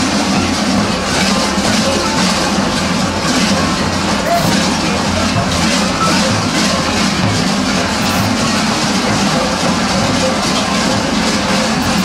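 Many large kukeri bells worn on the dancers' belts clanging together as the costumed troupe jumps and dances, a dense, continuous metallic clanging.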